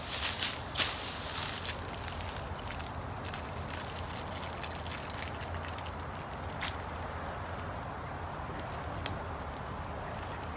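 Footsteps and rustling in dry leaf litter and grass for the first couple of seconds, then a steady low background hum with a single click partway through.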